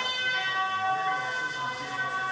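Bells ringing, several pitches sounding together and ringing on steadily.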